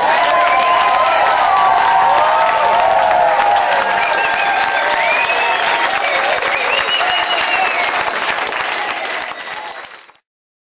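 Audience applauding steadily, with some voices calling out over the clapping; the applause fades out near the end.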